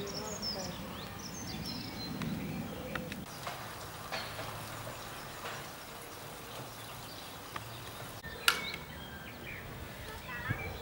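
Outdoor campsite ambience: birds chirping and faint distant voices over a steady background hum, with one sharp knock about eight and a half seconds in.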